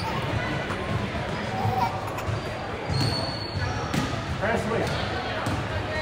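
Basketball bouncing on a hardwood gym floor: several dribbles in the second half, echoing in a large hall, with voices around.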